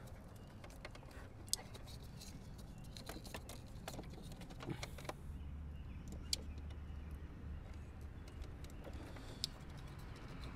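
Faint, sparse small clicks and ticks of a plastic wiring connector and a small screwdriver being handled while wires are worked out of the connector.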